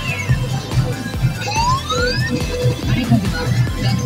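P High School Fleet All Star pachinko machine playing its music with a steady beat during a reach animation. Rising swoosh effects come in about one and a half seconds in.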